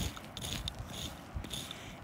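Faint, scattered clicks and scrapes of loose shale chips being disturbed during careful digging.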